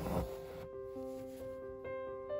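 Gentle background piano music of slow held notes, with a new note entering about a second in and another near the end. A brief soft rustle sits at the very start.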